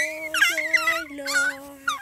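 A four-month-old baby vocalizing in short, high-pitched, wavering squeals, about four bursts.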